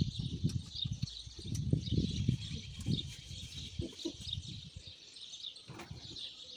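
Small birds chirping steadily in the background, with irregular low rumbling noise through the first four seconds that then dies down.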